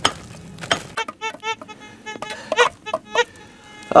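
Gold Bug 2 VLF metal detector giving a series of short signal tones that rise and fall in pitch as it passes over targets in the rock, after a few sharp knocks of rock near the start.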